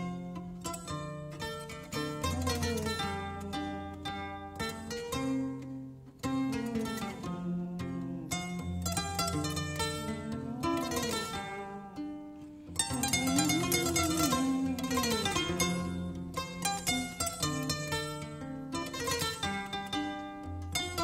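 Gambian kora, the West African harp-lute, playing a repeating bass figure under quick plucked melodic runs. It gets louder and busier about two-thirds of the way through.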